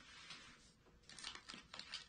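Faint crinkling of a plastic chip bag as chips are pulled out of it, a few soft crackles in the second half.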